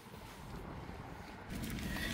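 Faint low rumbling background noise, with no distinct events, a little louder from about one and a half seconds in.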